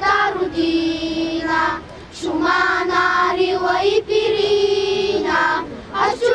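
A child's voice singing a slow Bulgarian patriotic song in long held notes, with a short pause for breath about two seconds in.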